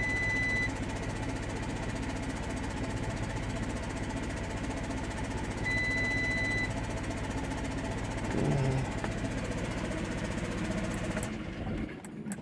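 Audi A4 engine idling roughly, felt to be running on fewer than all its cylinders amid sensor reference-voltage and throttle position sensor faults. Two short electronic beeps come about six seconds apart, and the engine cuts out by itself about a second before the end.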